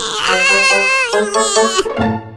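An animated character's high, wavering crying whimper over background music.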